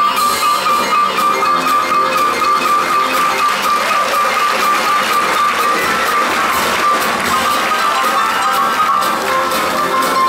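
Two grand pianos playing a fast boogie-woogie together, backed by a drum kit. A high treble note is struck in rapid repetition through most of the passage, dropping a step near the end.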